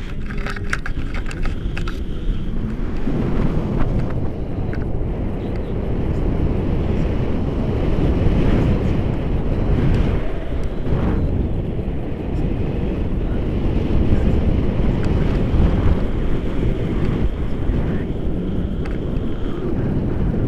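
Wind buffeting an action camera's microphone in flight under a tandem paraglider, a steady, loud rushing that swells and eases.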